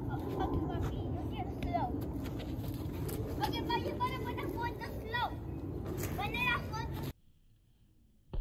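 Outdoor yard ambience: small birds chirping in short bursts over a steady low rumble, cutting off abruptly about seven seconds in.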